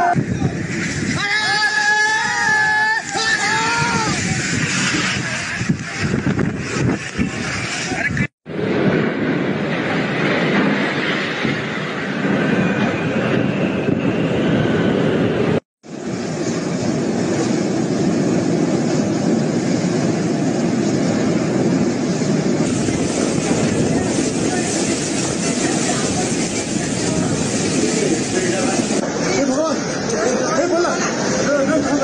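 Hurricane wind and rain rushing over a phone microphone, a loud steady noise, with voices shouting in the first few seconds. The sound drops out abruptly twice.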